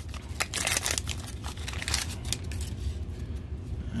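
Foil wrapper of an Upper Deck hockey card pack being torn open and crinkled by hand: a dense run of sharp crackles and rustles.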